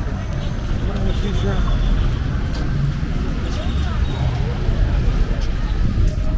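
Street ambience: steady traffic noise from passing cars, with indistinct voices in the background.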